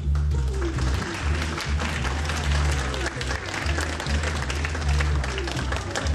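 Audience applauding, a dense patter of clapping that starts right away, over background music with a steady bass line.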